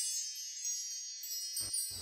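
A shimmering wind-chime-like sound effect: many high ringing tones slowly fading away. There is a brief low knock near the end.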